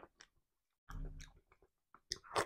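Mouth sounds of someone chewing amala with tomato sauce, eaten by hand: a faint wet click just after the start, then a short spell of chewing about a second in.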